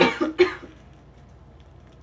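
A young woman coughing twice in quick succession.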